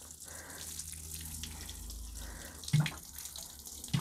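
Water sprinkling steadily from the rose of a plastic watering can onto a soil bed of freshly planted watercress, heavy watering to keep the bed soaked. A short low thud about three seconds in and another at the end.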